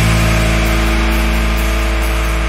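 Post-hardcore band recording: a long held chord rings steadily, with no drum hits.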